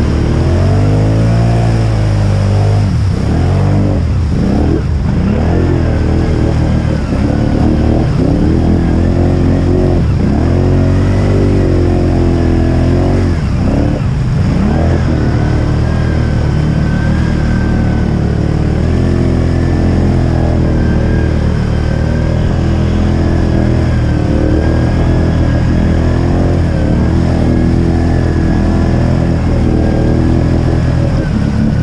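Can-Am ATV engine revving up and down repeatedly as the quad pushes through deep muddy water, then running at a steadier throttle from about halfway, with a thin steady whine over it.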